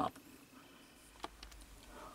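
Near silence: room tone, with a couple of faint clicks in the middle.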